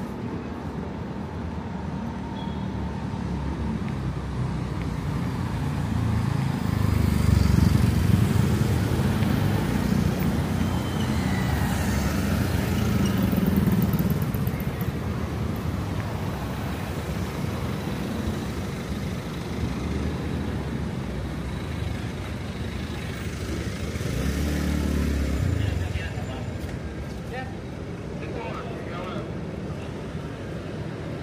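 City street traffic: cars passing on the road, with a long swell as vehicles go by from about seven to fourteen seconds in and a shorter pass around twenty-five seconds.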